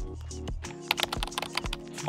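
Background music with steady held tones, and a short run of irregular computer keyboard keystrokes in the middle.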